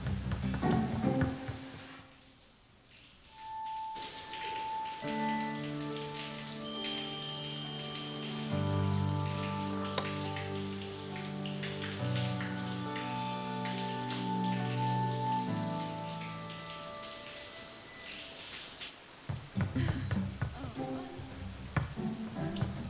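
Shower spray running steadily, under slow, held background music chords. The water starts suddenly about four seconds in and stops a few seconds before the end.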